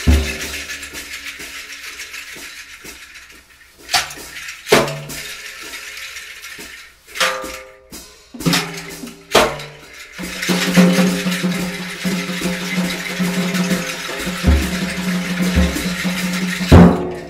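Small acoustic-electric group of bass clarinet, drum kit and electric bass playing sparse, open music: scattered drum and cymbal strikes and short low notes, then from about ten seconds in a long held low note under a steady cymbal wash.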